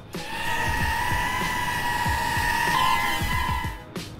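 Air Hogs DR1 mini quadcopter's motors whining steadily in flight, stepping up slightly in pitch near the end as the drone is turned, over background music with a low beat.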